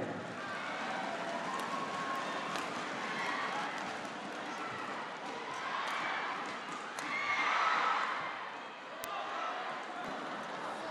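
Indoor arena crowd during a badminton rally, with sharp clicks of racket strikes on the shuttlecock. The crowd's shouting swells twice, around six seconds in and more loudly at about seven and a half seconds.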